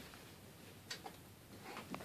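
Quiet handling of a small vinyl toy figure on a tabletop: a light click about a second in and fainter clicks near the end as the figure is set down.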